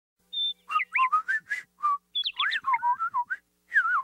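Bird-talk whistling in a cartoon: quick chirps and trills gliding up and down, in three short phrases, the second starting about two seconds in and the third just before the end.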